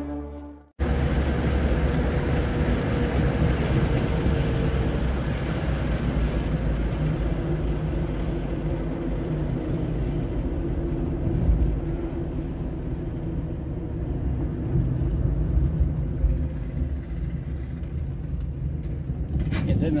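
Car driving along a road, a steady rumble of engine and tyre noise heard from inside the car. A man's voice starts at the very end.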